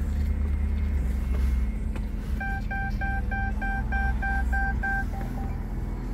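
Cabin warning chime beeping about three times a second for roughly three seconds, starting a couple of seconds in, the sign of a door left open. A low steady rumble from the idling diesel engine lies underneath.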